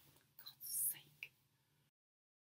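A woman's faint, breathy whisper, then the sound cuts off abruptly to dead silence near the end.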